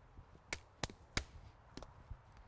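Wooden arnis stick striking a tree trunk in slashes, four sharp knocks in quick, uneven succession.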